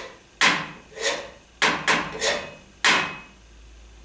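Live percussion: six sharp wooden knocks in an uneven rhythm, each ringing out briefly. The last falls about three seconds in.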